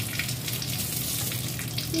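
Kitchen tap running steadily through a newly fitted water filter, left to flush for five minutes because the first water comes out black.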